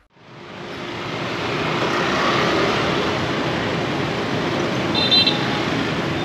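City street traffic: a steady noise of cars and motorbikes going by, fading in at the start, with one short, high vehicle-horn beep about five seconds in.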